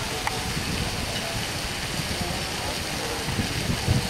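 Steady outdoor background noise with an uneven low rumble, and faint distant voices.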